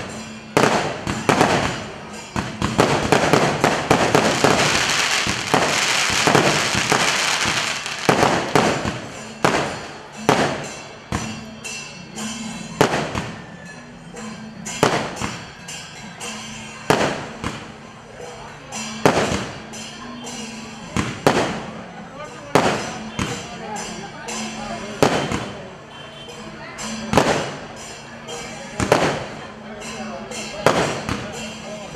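Fireworks bursting in the sky: a dense stretch of rapid crackling bangs in the first several seconds, then single sharp bangs about every one to two seconds.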